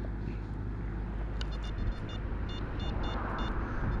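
Short high-pitched beeps from an XP Deus metal detector as its coil is swept over the ground, coming in a scattered run from about a second and a half in, over a steady low wind rumble on the microphone.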